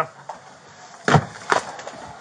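Two sharp knocks on wood, about half a second apart, over a faint rustle of movement.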